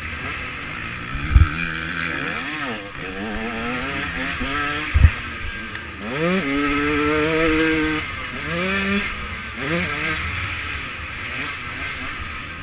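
KTM 150 SX two-stroke single-cylinder motocross engine under riding load, its pitch repeatedly rising as it revs up through the gears and then holding, heard from a helmet-mounted camera. Two sharp thumps, about a second and a half in and about five seconds in, are the loudest sounds.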